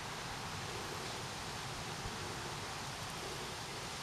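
Steady, even background hiss of outdoor ambience, with no distinct sound events.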